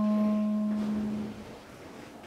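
Clarinet holding a low note that fades away over about a second and a half, then a short pause.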